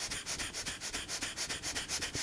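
Rapid, forceful breaths in and out through the nose in Bhastrika pranayama (bellows breath), a quick even rhythm of short puffs, several a second, picked up close on a lapel microphone.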